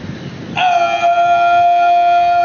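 A brass instrument sounds one long, steady held note, starting sharply about half a second in: the start of the music for the national anthem at a military parade.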